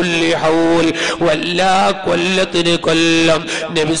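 A man's voice reciting in a melodic, chant-like cadence, with syllables held on steady pitches between short breaks.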